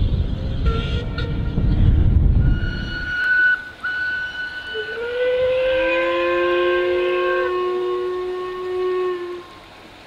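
Steam locomotive whistles, several at different pitches, blowing long overlapping blasts from about three seconds in until near the end. Before them there is a low rumble.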